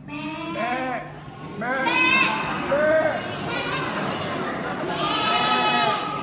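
Young children imitating sheep, bleating in a series of drawn-out, overlapping calls.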